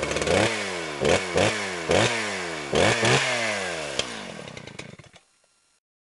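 A small engine revved in about half a dozen quick blips, its pitch sliding back down after each, then fading out near the end.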